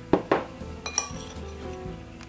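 Light clinks against a glass pickle jar as peeled quail eggs are put into it: about four quick clicks in the first second. Background music plays throughout.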